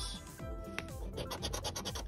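Scratching the latex coating off a scratch-off lottery ticket's number spots, a rapid run of short scraping strokes, with music playing underneath.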